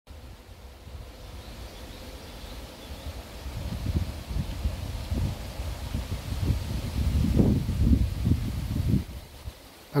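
Wind gusting over the microphone with leaves rustling, a low rumble that builds in surges from about a third of the way in and cuts off suddenly shortly before the end.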